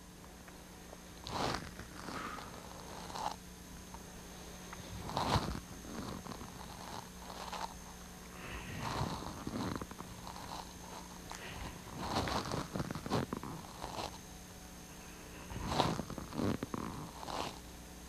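Soft, short noises of a person moving through a rippling spine exercise, coming roughly every two seconds, some in quick pairs, over a faint steady hum.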